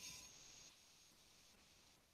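Near silence: faint room hiss during a quiet pause in a breathing exercise.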